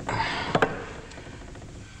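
A miner's pick hitting and scraping against rock: a gritty scraping crunch for the first half-second, ending in two sharp strikes close together, then little more.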